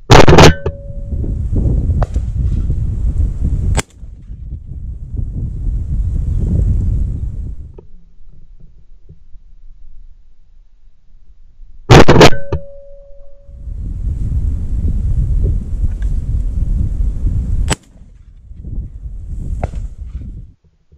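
Two shotgun shots at flying woodpigeons, about twelve seconds apart, each a single sharp, very loud report. After each shot comes several seconds of low rumbling noise that stops abruptly.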